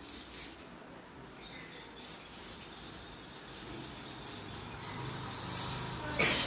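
Quiet outdoor ambience with a thin, steady high-pitched whistle that sets in about a second and a half in and holds, and a brief rustle near the end.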